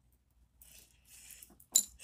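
Faint handling rustle, then one sharp metallic clink near the end: the headband's metal hook and buckle knocking together as it is handled.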